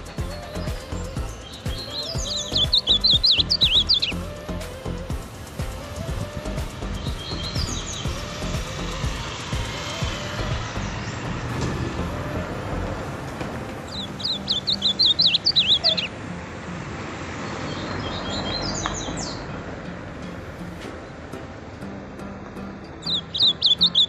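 Ultramarine grosbeak (azulão) singing: three loud rapid warbling phrases of about two seconds each, roughly ten seconds apart, with a couple of softer short snatches between them.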